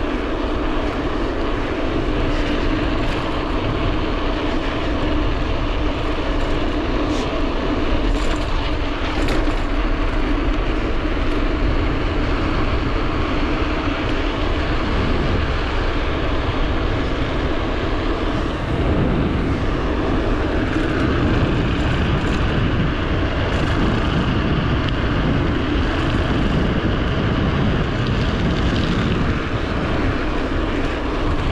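Steady wind rush on a handlebar-mounted GoPro's microphone over the hum of a Scott Scale mountain bike's tyres rolling on asphalt, with a few faint clicks about a third of the way in.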